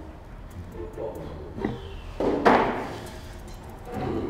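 Handling noise from an acoustic guitar being passed over: a few light knocks, then one louder thump about two and a half seconds in.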